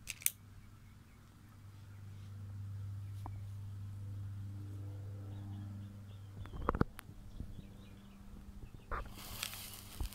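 A sparkler lit with a utility lighter catches about a second before the end and fizzes with a steady hiss, after a few sharp clicks. Earlier a low steady hum runs for several seconds.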